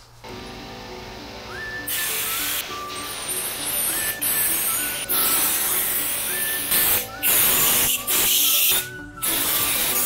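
Background music with a melody over a compressed-air spray gun hissing as it sprays LizardSkin sound-deadener coating. The spray comes in long bursts from about two seconds in, with several short breaks.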